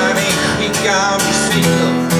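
Acoustic guitar strummed in a steady rhythm, with a man singing over it into a microphone.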